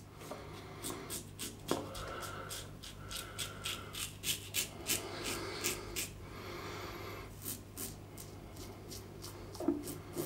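Executive Shaving Claymore razor with a Feather Pro Guard blade cutting stubble on the upper lip: a quick run of short scraping strokes, two or three a second, with a pause about six seconds in before a few more.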